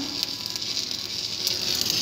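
Stick-welding arc crackling and hissing steadily as a bead is run uphill over a crack in a truck's differential housing.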